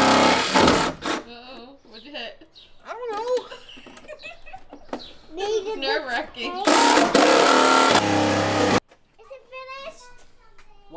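Handheld power saw cutting through the sheet-steel side panel of a Mercedes Sprinter van. It runs loudly for about a second and stops, then starts again about two-thirds of the way in and cuts off suddenly after about two seconds. The new tool keeps stopping mid-cut, and the user is not sure why.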